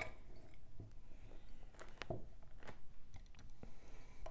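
Small scattered clicks and light rattling as a handful of cupcake picks are taken out of an old mustard jar, with a quick run of ticks near the end.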